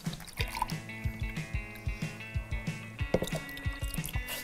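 Water poured from a plastic bottle into a drinking glass, trickling and dripping, under steady background music.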